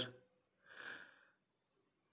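Near silence, broken once about a second in by a single faint, short breath, most likely the narrator inhaling between phrases.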